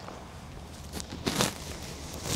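Bare feet stepping and shuffling on gym mats, with a few soft thumps a little past the middle.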